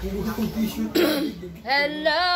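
A person coughs once, sharply, about a second in, between bits of talk; near the end a voice starts a long held sung note.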